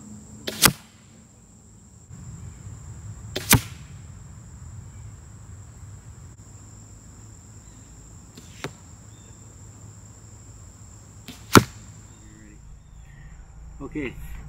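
Bear X Intense crossbow bolts shot into a foam block target: four sharp single cracks a few seconds apart, the third fainter than the others.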